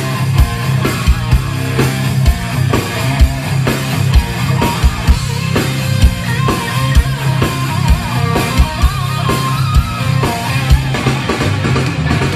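Live rock band playing an instrumental passage: electric guitars over a drum kit keeping a steady beat, with bass underneath. A sustained guitar lead line comes in about halfway.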